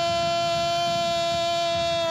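A football commentator's long drawn-out goal cry, one shouted vowel held at a single steady pitch.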